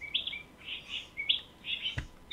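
Small birds chirping: a quick series of short, high chirps, about four to five a second.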